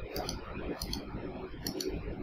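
Computer mouse clicking: three quick double clicks, roughly one every second, over low steady room noise.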